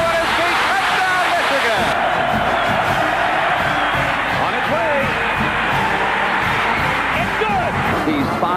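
Music bed under an archival football radio call, with a stadium crowd cheering and an announcer's voice. About two seconds in it cuts to a duller recording with the highs gone.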